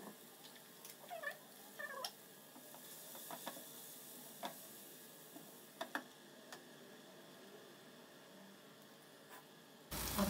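Quiet kitchen sound from a pan of frying masala: a faint hiss, a few light clicks of utensils and a glass lid on the pan, with the loudest clicks around two and six seconds in. Two short sliding calls come about one and two seconds in.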